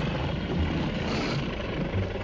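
Rocket-launch sound effect: a steady, noisy rumble of a rocket engine.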